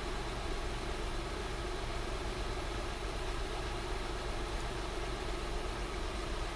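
A 2006 Acura TL's 3.2-litre V6 engine idling steadily while it warms up.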